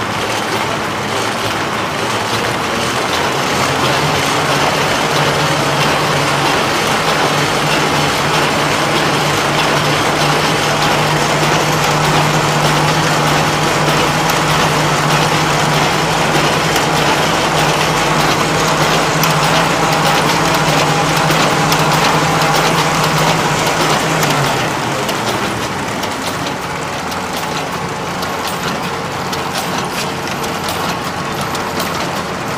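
A large gear- and belt-driven industrial machine running, with a steady mechanical clatter. A low hum joins a few seconds in and drops away about 25 seconds in, leaving the clatter a little quieter.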